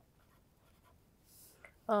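Faint scratching of a marker pen writing on chart paper, with a short soft hiss about a second and a half in; a voice begins just at the end.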